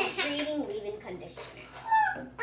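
A girl's voice in short, high, sliding vocal sounds that carry no clear words.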